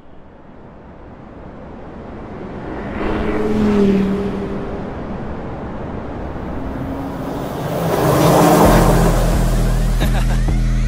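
A car engine building up and speeding past over a rising rush of noise. It swells about four seconds in and again with a broad whoosh near the end. Just before the end a deep, steady bass note from the music comes in.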